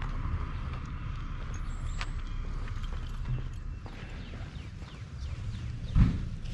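Footsteps on a concrete driveway picked up by a body-worn camera, over a steady low rumble of movement and wind on the microphone, with a sharp click about two seconds in and a louder clack near the end.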